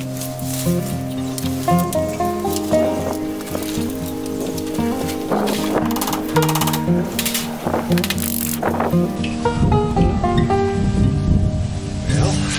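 Background instrumental music with steady held notes, with a run of sharp clicks and knocks in the middle.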